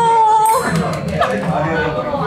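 A high voice holds one steady note for about half a second, then indistinct chatter goes on underneath.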